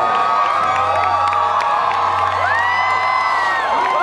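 Concert crowd cheering and whooping, with long held shouts that rise and fall in pitch, over a low steady hum.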